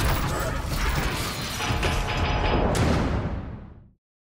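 Opening-title sound design: a dense layer of mechanical sound effects mixed with music, fading out over the last second.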